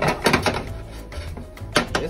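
Wooden spoon scraping and knocking against a skillet while browning flour is stirred: a quick run of clatters at the start and another near the end, over background music.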